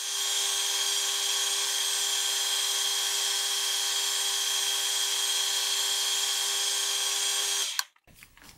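Metal lathe running and turning a steel workpiece, a carbide insert taking a 14-thou cut: a steady whine with a hiss, cutting off abruptly near the end.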